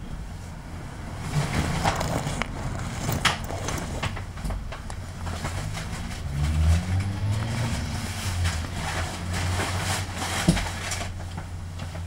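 1999 Isuzu Cubic KC-LV380N diesel bus engine running with a steady low hum, its note rising and falling in pitch a couple of times midway. A few sharp knocks come through, one of them about three seconds in and one near the end.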